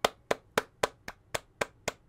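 Hand clapping, steady at about four claps a second.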